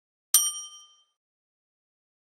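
A single bright bell-chime 'ding' sound effect, the notification-bell sound of an animated subscribe button. It strikes about a third of a second in and rings out, fading away in well under a second.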